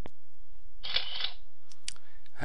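Pause in a voice-over recording: a sharp click at the start, a short breathy intake about a second in, and two small mouth clicks just before the narrator speaks again, over a steady low hum.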